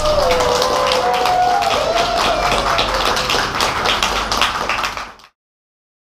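Clapping with a drawn-out call from a voice over it, just after the music has stopped; everything cuts off suddenly about five seconds in.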